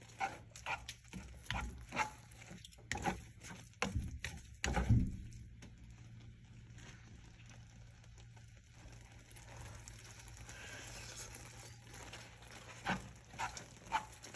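A plastic slotted spoon stirring thick cooked lentils in a frying pan: wet squelches and scrapes against the pan, busiest in the first five seconds and again near the end, with a quieter stretch in between.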